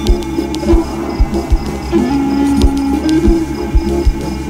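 Music with a steady beat: regular bass-drum thumps under a repeating low melodic phrase.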